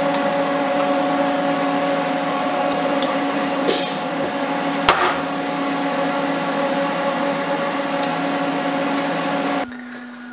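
Motor-driven shop machinery running steadily: a hum with several held tones over a hiss. A short burst of hiss comes a little under four seconds in, and a sharp click about a second later. The machine sound cuts off suddenly near the end.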